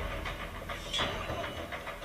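The episode's soundtrack playing from the speakers in the room: a low, steady rumbling ambience with a couple of soft clicks.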